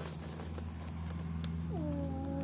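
Puppies tussling on straw: light rustling and small scuffs over a steady low hum. Near the end an animal call starts, dropping in pitch and then holding.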